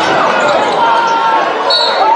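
Game sound in a basketball arena: a basketball being dribbled on a hardwood court, with a background of voices and a few short high squeaks.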